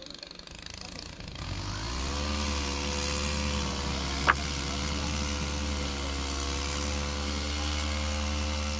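A small engine starts up about a second and a half in and then runs steadily at an even pitch, with one sharp knock near the middle.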